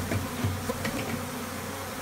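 Honey bees buzzing in a steady hum as the disturbed colony flies around in a small room, with a few short sharp clicks in the first second or so.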